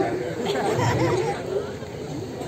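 Speech only: a man talking into a handheld microphone over a public-address system, with crowd chatter behind.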